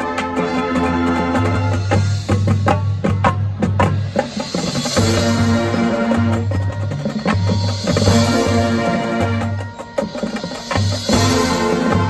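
High school marching band playing: wind instruments hold loud chords over low notes that pulse on and off, with a run of sharp percussion strokes about two to four seconds in.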